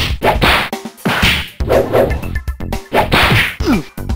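Kung fu fight sound effects: a quick run of whooshing swishes and punch-like whacks, about five or six in four seconds.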